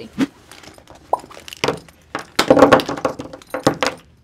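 Rummaging in a fabric tote bag and tipping it out: fabric rustling with scattered knocks and clicks of small items such as lip-balm tubes. The loudest clatter comes a little past halfway.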